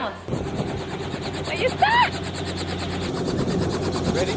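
A helicopter running on the pad, with a rapid, even beat that starts abruptly about a third of a second in. A voice is heard briefly over it about two seconds in.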